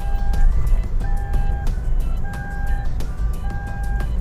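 Toyota Avanza Veloz seatbelt warning chime beeping repeatedly, about one steady beep every second, the signal that a seatbelt is unbuckled. Under it is the low hum of engine and road noise inside the car's cabin.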